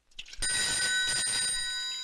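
Old rotary desk telephone's bell ringing: a loud, bright ring starts about half a second in, after a few small clicks, and begins to fade near the end.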